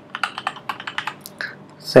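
Computer keyboard being typed on: a quick, irregular run of keystroke clicks as a line of text is entered.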